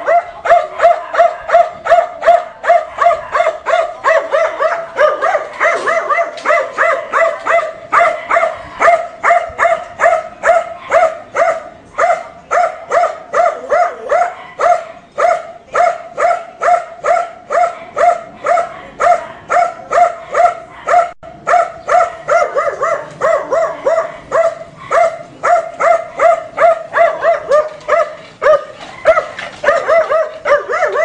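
A caged dog barking over and over without a break, about two to three barks a second at an even pace.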